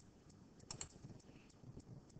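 Several faint, irregularly spaced clicks of a computer mouse over near silence, as a colour is picked from an on-screen palette.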